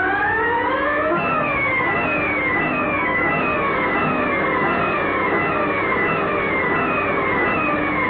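Siren-like electronic whine of the whirling centrifugal table spinning: a pitched whine rises for about a second, then falls again and again in sweeps about one and a half times a second.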